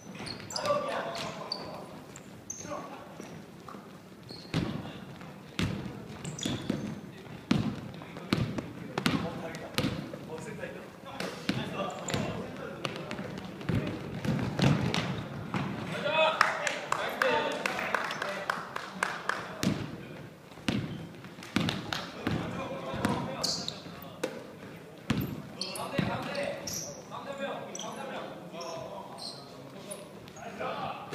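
Basketball game on a wooden gym floor: the ball bouncing and dribbling in frequent short thuds, with players' footsteps and voices calling out.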